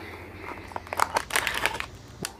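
A cardboard ice-cream bar box being opened and the paper-wrapped bar pulled out of it. It makes a quick flurry of crinkles, tears and small clicks that starts about half a second in.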